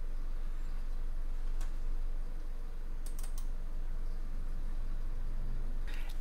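A few sharp computer clicks: one about a second and a half in, then a quick run of three around three seconds, over a steady low hum and room tone.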